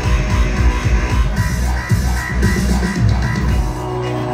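Loud electronic dance music through a club sound system: a heavy, driving bass and kick pattern with a short high synth figure repeating in the second half.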